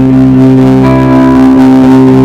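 Live rock band playing loudly, led by held guitar chords that ring on steadily, with new notes coming in about a second in.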